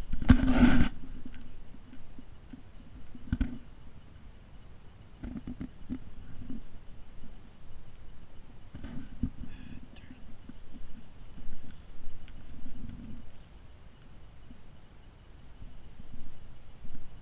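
Soft, irregular rustles and thumps of footsteps on grass, with a louder brief burst of rustling right at the start.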